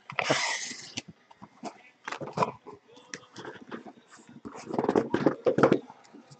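Cardboard shipping case being handled and lifted off the boxes packed inside it. There is a scrape of cardboard in the first second, scattered rubs and knocks, and a denser run of rustling and knocking near the end.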